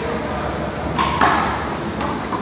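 A small rubber ball is hit during a one-wall handball-style rally: two sharp smacks about a fifth of a second apart, about a second in, as the ball is struck and cracks off the concrete wall. The first smack has a brief ping to it.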